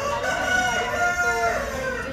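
A rooster crowing once: one long pitched call of almost two seconds, louder than the voices around it, that drops in pitch near the end.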